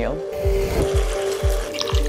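Background music with a steady beat, about two beats a second, over the splash of vegetable stock poured from a glass carafe into a pot of vegetables and tomatoes.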